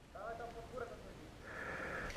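Quiet pause with a faint, distant voice briefly early on, then a faint steady hiss near the end.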